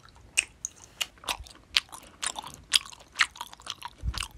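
Close-up mouth sounds of a person chewing a diet gummy jelly, with sharp chewing clicks about twice a second.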